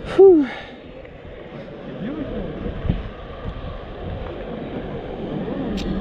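A brief vocal 'ooh' from the rider, then a steady rushing noise of wind and ride machinery as the Booster thrill ride's arm lifts the seat high, growing a little louder toward the end.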